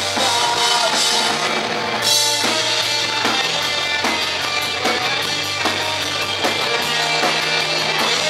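Live punk rock band playing: electric guitar and keyboard over a drum kit, with the cymbals opening up about two seconds in.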